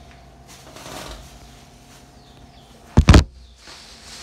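Arno Ultra Silence Force electric fan running with a faint, steady hum. About three seconds in comes a loud double thump.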